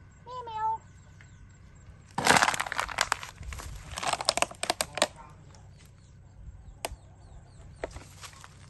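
A cat gives one short meow, then from about two seconds in a loud run of crackling and scraping lasts about three seconds, with a single sharp click near the end.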